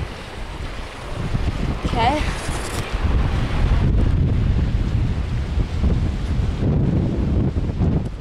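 Wind buffeting the camera's microphone: a low, uneven rumble that builds about a second in and stays loud through the second half.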